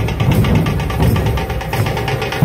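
A dhol-tasha drum troupe playing: a fast, continuous roll of sharp tasha strokes over deep, heavy dhol beats.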